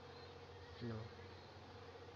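A steady low electrical hum, with one short spoken word about a second in.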